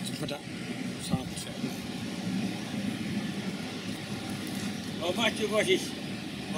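Steady outdoor background noise with a low hum, a sharp click about a second in, and a person's voice briefly near the end.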